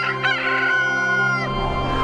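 A rooster crowing once: a cock-a-doodle-doo that rises at the start, holds one long high note, and drops off about a second and a half in. It sounds over a sustained music chord.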